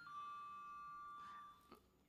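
Electronic ding-dong chime: a higher note steps down to a lower note that is held steady for about a second and a half, then stops. It is the hearing's speaking-time buzzer signalling that the witness's time is up.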